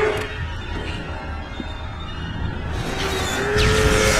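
Action-film soundtrack: score music over a steady low rumble, with a held note at the start and again near the end. A rush of noise swells in just before the end.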